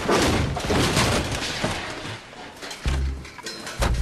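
A sudden crash with clattering that dies away over about a second, something knocked over, followed by background music with a deep bass beat near the end.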